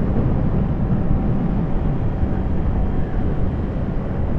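Suzuki GSX-R600 sportbike's inline-four engine running steadily at cruising speed, mixed with wind and road noise.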